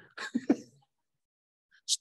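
A man's short, breathy non-speech vocal sound in the first second, a throat-clearing or laughing grunt. Speech begins near the end.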